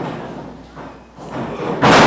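A wrestler landing hard on the wrestling ring after a high knee: one loud thud near the end, with the ring ringing on briefly after it.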